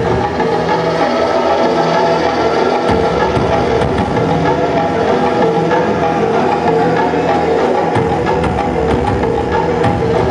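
Metal band playing live, with distorted electric guitars and drums in a loud, dense, unbroken wall of sound. The lowest notes shift about 3 seconds in and again about 8 seconds in.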